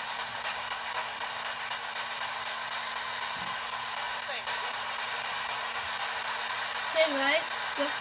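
P-SB7 spirit box sweeping through radio stations, giving a steady hiss of radio static with a faint steady hum under it. A short voice comes in near the end.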